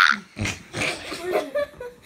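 Boys laughing in short, irregular bursts with brief gaps between them.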